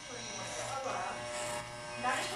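Electric hair clippers buzzing steadily as they shave the hair off a head.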